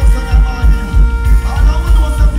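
Live dancehall music played loud through a concert sound system, with a heavy, pulsing bass beat about three times a second and a vocal over it.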